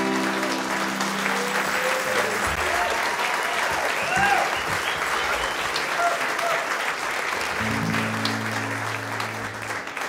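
Audience applauding and cheering with a few whoops at the end of a song, while the last chord of the acoustic guitar and fiddle rings out over the first couple of seconds. A low held chord sounds again briefly near the end.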